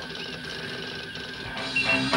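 Low background hiss and room noise with faint clicks, then guitar music starts up about one and a half seconds in.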